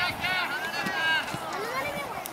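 Several high-pitched voices shouting and calling out over one another, in short calls at first and then longer, gliding calls.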